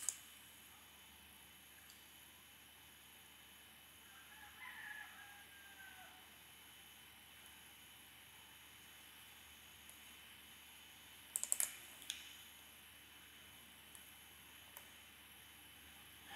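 Near silence: faint room hiss broken by a few short computer keyboard and mouse clicks, a cluster right at the start and another about eleven and a half seconds in. About four to five seconds in there is a faint, brief sound that rises and then falls in pitch.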